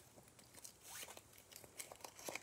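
Faint crinkling and small clicks of a small foil wrapper being picked open by hand.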